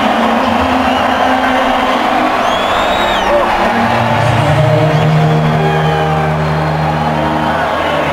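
Arena crowd cheering loudly and steadily, with a few whistles, over music from the arena's sound system whose sustained low chords grow stronger about halfway through.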